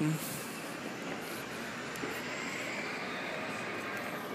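Steady city street noise: a constant hum of traffic with no single sound standing out.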